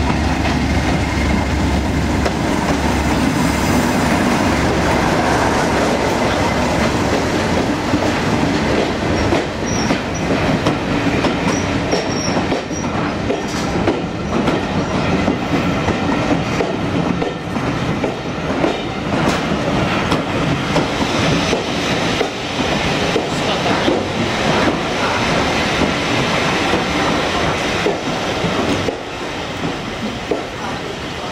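Diesel locomotive running as it comes into the platform with a low engine rumble strongest in the first few seconds, then passenger coaches rolling past with wheels clicking over the rail joints. Faint high wheel squeals come about ten seconds in.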